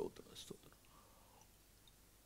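A few faint mouth sounds and a breath close to a headset microphone in the first half second, then near silence.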